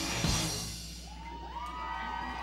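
A live rock band's final hit ringing out and dying away. From about a second in it gives way to crowd cheering with rising whoops.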